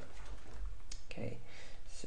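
A couple of light clicks about halfway through, from a computer mouse working drawing software, over a steady background hiss, followed by a brief low hum of the voice.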